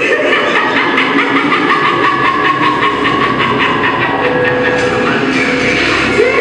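A recorded train sound effect played over the hall's sound system as part of the dance's backing track. A fast, regular clickety-clack of about five ticks a second runs over a steady hiss.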